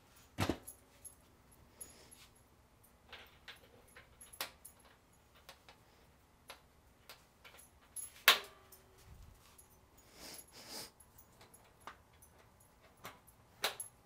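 Metal lid of a Badger Barrel drum smoker set down on the barrel with a sharp clank about half a second in, followed by scattered light clicks and knocks, and a second sharp clank about eight seconds in.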